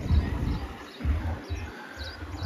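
Outdoor street ambience: an uneven low rumble, as of wind on the microphone, that drops out twice, with faint high bird chirps over it.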